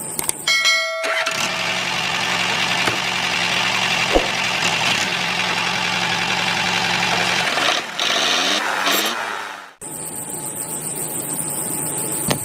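A small motor running steadily for several seconds, then cutting off suddenly near the end, with a brief chime just before it starts.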